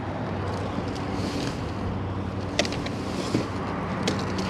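A steady low mechanical hum, like an engine or machinery running nearby, with a couple of light clicks just past the middle.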